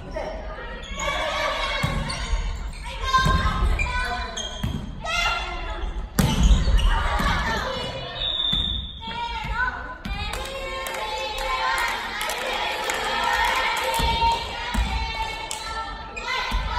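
Volleyballs being struck and bouncing on a wooden gym floor, sharp slaps echoing in a large hall, the loudest about six seconds in. Players' voices call out throughout.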